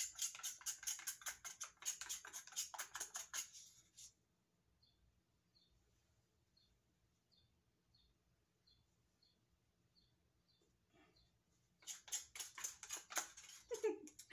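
A plastic spoon scraping paint from the inside of a cut-down insulated to-go coffee cup, in quick scratchy strokes about five a second. The scraping runs for the first four seconds, stops for several seconds, and starts again near the end.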